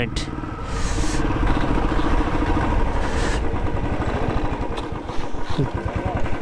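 Motorcycle engine running under the rider, with wind rush on the handlebar-mounted microphone. Near the end the engine note drops to slow, separate pulses as the bike slows into a parking area.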